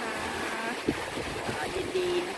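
A boat under way on open sea: a steady rush of wind and water, with wind buffeting the microphone. A short click comes about a second in.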